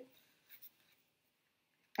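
Faint scratching of a pencil tracing around a paper tree template on construction paper, with a slightly louder stroke about half a second in.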